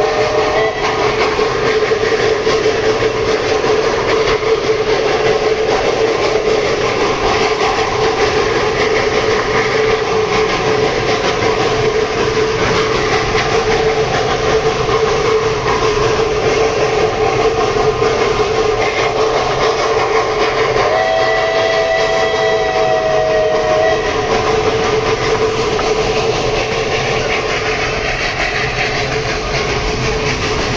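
Narrow-gauge steam train running, heard from a passenger carriage, with the steady clatter of its wheels on the rails. The locomotive's steam whistle ends just under a second in and sounds again in a blast of about three seconds near the 21-second mark.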